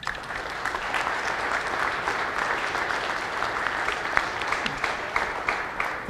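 Audience applauding: a dense, steady patter of handclaps that starts at once and tails off near the end.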